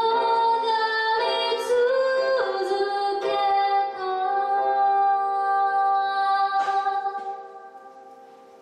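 A woman singing a Japanese ballad over her own grand piano accompaniment, holding one long steady note through the middle of the phrase; she takes a breath and the music softens near the end.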